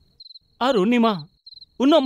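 Crickets chirping in short, high trills that repeat every second or so, the night-time ambience of the scene.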